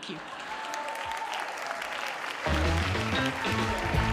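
Live audience applauding at the end of a told story, with music coming in underneath about two and a half seconds in.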